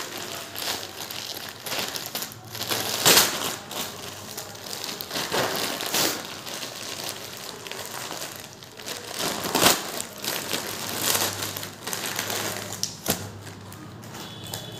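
Thin plastic courier mailer bag crinkling and rustling as it is handled and pulled open by hand, with a few louder sharp crackles spread through it.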